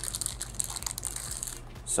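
Crinkling of a metallised anti-static bag around a hard drive as it is picked up and handled, an irregular light crackle.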